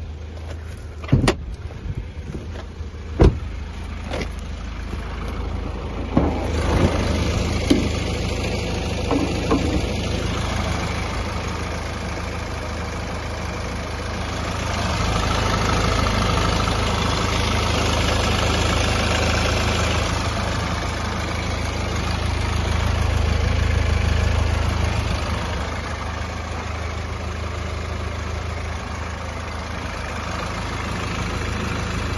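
2016 Kia Sportage's 1.7-litre diesel engine idling steadily, heard louder with the bonnet open from about six seconds in. A few sharp knocks come in the first few seconds, the loudest about three seconds in.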